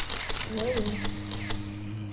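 A quick run of light clicks and taps, with one short spoken syllable, then a low steady hum sets in about halfway through.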